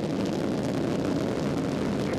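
Space Shuttle Atlantis's two solid rocket boosters and three liquid-fuel main engines firing at full thrust seconds after liftoff: a loud, steady, deep rocket exhaust noise.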